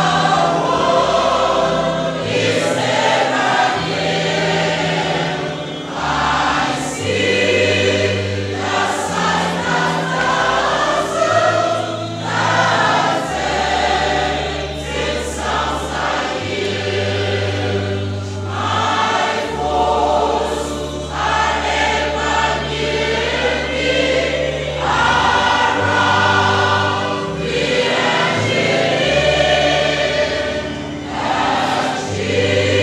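A mixed choir of men's and women's voices singing a hymn together, over low bass notes held for several seconds at a time.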